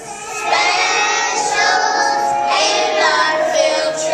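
A group of young children singing a song together in unison, with notes held for about half a second to a second.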